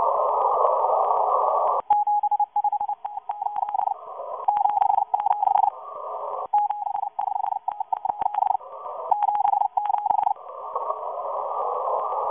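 Shortwave radio receiver tuned to a Morse code transmission from a Russian agent station aimed at the USA. Narrow-band static hiss gives way about two seconds in to a single beeping tone keyed in dots and dashes, with crackles and bursts of static between groups. Near the end it falls back to steady static.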